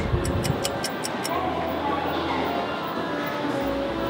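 Rapid run of about seven sharp ticks in the first second, a clock-ticking sound effect, followed by soft background music.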